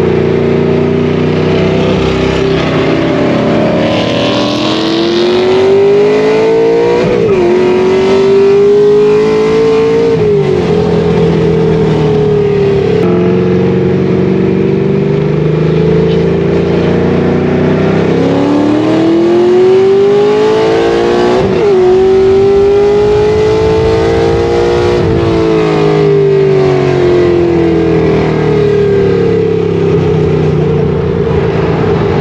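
Ford Falcon GT's 5.4-litre DOHC V8 heard from inside the cabin, pulling up through the gears. Its pitch climbs and then drops back at each upshift: twice in the first half and twice more in the second.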